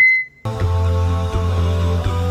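A short high beep cuts off at the very start, then after a half-second gap an edited-in vocal-only backing track begins: sustained hummed notes held over a low drone.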